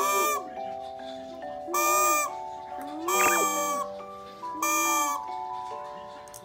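A baby going 'uuu' into a toy trumpet, four short buzzy toots each under half a second, over background music with held notes.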